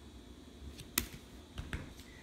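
Small cardboard board books being handled: a sharp click about a second in, with fainter taps just before it and near the end.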